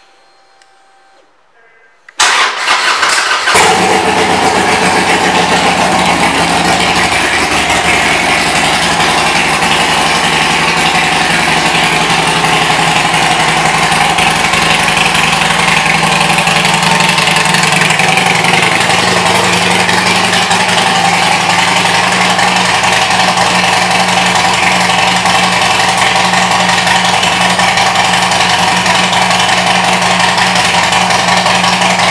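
2014 Harley-Davidson Sportster 1200 Custom's air-cooled V-twin, breathing through aftermarket pipes, starting about two seconds in and then idling steadily and loudly.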